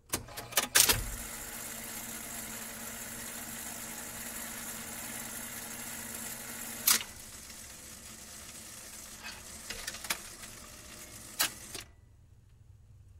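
Jukebox playing a vinyl record before the song begins. A few mechanical clicks and clunks come in the first second. Then the needle runs in the lead-in groove with a steady crackle and hiss over a low hum, broken by a sharp click about seven seconds in and another near the end.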